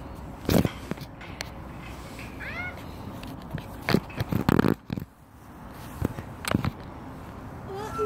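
Handling knocks and scrapes from a phone being moved about and set down on gravelly tarmac, the loudest cluster about four to five seconds in. A short high call sounds about two and a half seconds in.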